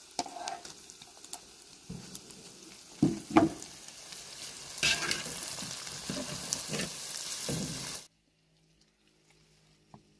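Beef tripe and onions sizzling in a hot wok, with knocks and scrapes as a wire skimmer stirs them. The sizzle grows louder about five seconds in, as sliced bell peppers go into the pan, then cuts off abruptly about two seconds before the end.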